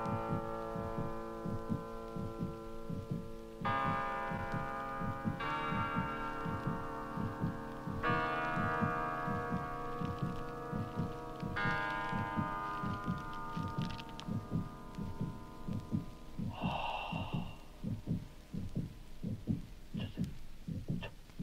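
Late-1960s electronic tape music: sustained, overtone-rich electronic chords that shift to new pitches several times, over a steady low throbbing pulse of about two and a half beats a second. A short buzzy burst with a high tone comes in briefly about three-quarters of the way through.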